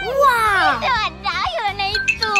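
Young children's excited, high-pitched wordless squeals and shouts over background music with a steady low beat. The loudest squeal comes right at the start and falls in pitch.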